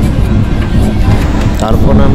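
Electric local train running, its steady low rumble mixed with wind from the open window buffeting the phone's microphone.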